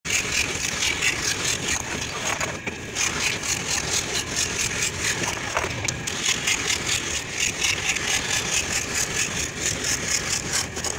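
Power tool on a long wooden arm working the curved edge of a thick wooden panel: a loud, steady machine noise with a hiss and an even pulsing of about four to five beats a second.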